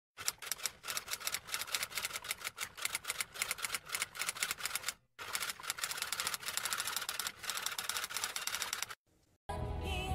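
Typewriter-style typing sound effect: rapid keystroke clacks in two runs of about four and a half seconds each, with a brief break between them. Music with singing comes in near the end.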